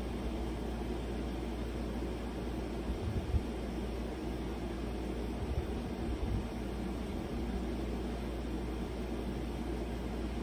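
Steady low hum and hiss of room background noise, with a few soft bumps a few seconds in.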